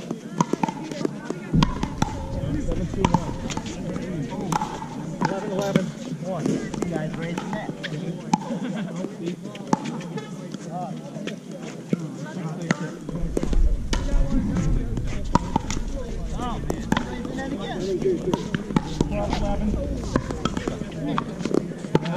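Pickleball rally: repeated sharp pops of paddles striking the plastic ball, over background voices and a low rumble that grows heavier in the second half.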